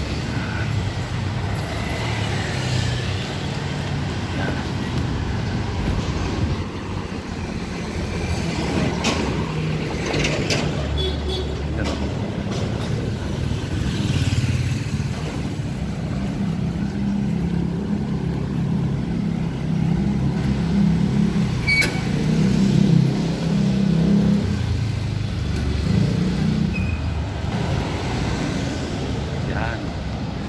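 Road traffic on a city street: motor vehicles passing with a steady low rumble.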